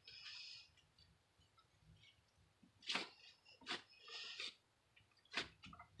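Quiet handling sounds of nitrile-gloved hands pressing down on a boudin-stuffed pork chop on a plate: a few faint, widely spaced clicks and short rustles.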